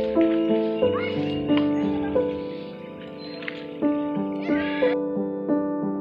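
Gentle piano music over outdoor field sound, with a horse whinnying about four and a half seconds in. The outdoor sound cuts off suddenly just after, leaving the piano alone.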